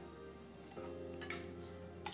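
Soft background music with held chords that change about three quarters of a second in. A little over a second in there is a faint clink of a steel spoon against the wok.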